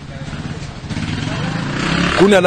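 A motor vehicle's engine running close by, growing steadily louder.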